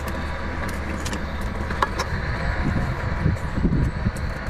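Cooked lobster shell cracking and crackling as it is pulled apart by hand, with a few sharp snaps about two seconds in, over a steady low hum.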